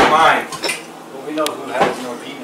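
A few short clinks and knocks of glasses and drink cans being handled on a table, with brief bits of voices around them.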